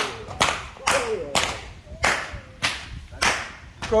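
Jab Jab masqueraders' long rope whips cracking: a run of sharp cracks, about eight in four seconds at roughly half-second intervals, with voices faint behind them.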